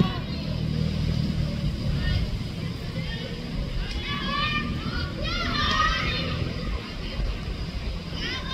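Girls' soccer game: a sharp knock of the ball being headed at the very start, then young players' high voices calling out on the field, loudest a little past the middle, over a steady low rumble.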